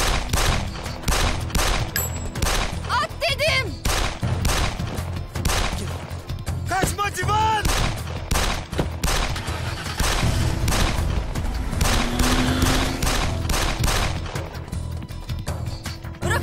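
A gunfight: a long exchange of pistol shots, roughly one every half second, with no let-up, under shouting and a music bed.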